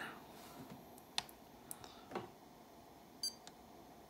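A few faint clicks, then a short high-pitched key beep from an iCharger 4010 Duo battery charger near the end as its TAB/SYS button is pressed.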